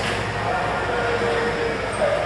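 Steady low background hum and room noise with no distinct event, and a faint held tone partway through.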